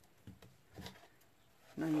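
Quiet handling of a paper-covered MDF box, with two faint soft rustles as it is lifted and turned in the hands; a spoken word near the end.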